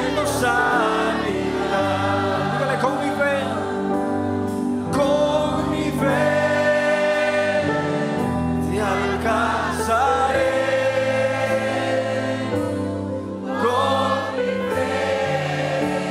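Congregational gospel worship music: many voices singing together, accompanied by electric bass guitar and keyboard holding long chords.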